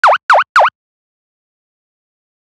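Three quick cartoon-style 'bloop' sound effects in the first second, each dipping in pitch and springing back up, for a channel logo intro.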